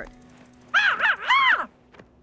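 Two short, high cartoon creature calls about half a second apart, each rising and then falling in pitch.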